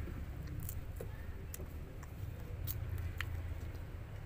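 Fingers tearing open the rind of a rambutan: a few faint, scattered crackles and clicks over a low steady hum.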